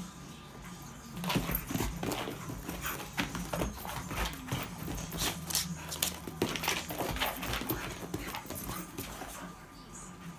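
A dog and a cat play-fighting on a carpeted floor: irregular scuffles, bumps and scrabbling that start about a second in and die down near the end.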